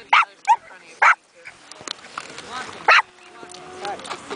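A dog barking in short, sharp barks, three close together in the first second or so and one more about three seconds in.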